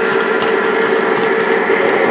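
Lionel O-gauge model train, with Burlington F3 diesels pulling 18-inch aluminum California Zephyr passenger cars, running on the track. It makes a steady hum with scattered clicks.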